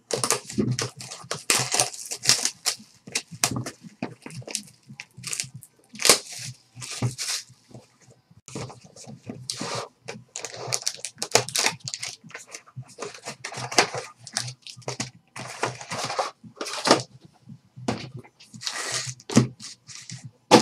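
A sealed 2012-13 Panini Prime hockey hobby box being unwrapped and opened by hand: a run of irregular crinkling, tearing and scraping of wrapping and cardboard.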